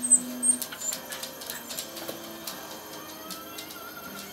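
Quiet handling noise: light clicks and rubs as a decorated craft box is turned over in the hands. A few faint, high bird chirps come in the first half second.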